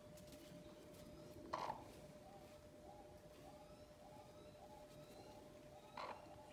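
Near silence with a faint steady hum. There is one short sound about one and a half seconds in, then a faint run of soft chirps, about two a second.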